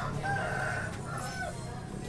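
A rooster crowing, one held call, over low steady street background noise.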